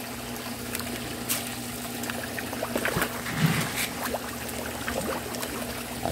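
Water trickling and pouring into a fish tank from the filtration system's return, over a steady low hum from the circulation pumps, with a few small splashes.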